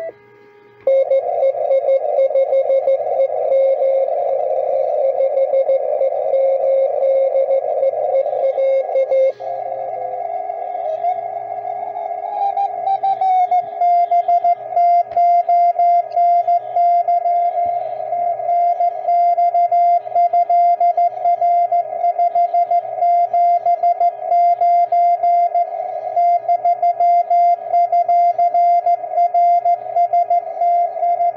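Morse code (CW) from a distant station received on an Elecraft K2 transceiver: a single tone keyed on and off in dots and dashes over a narrow band of hiss. Between about ten and thirteen seconds in, the tone glides up in pitch as the receiver is retuned and its audio filters are adjusted. The keying carries on at the higher pitch.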